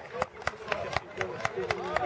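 Hands clapping in a steady rhythm, about four claps a second, over men's voices talking.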